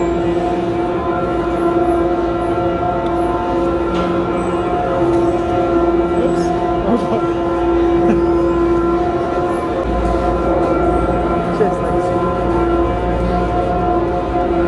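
Gondola lift station machinery running: a steady, loud mechanical whine at one constant pitch over a low rumble, the rumble growing stronger about ten seconds in.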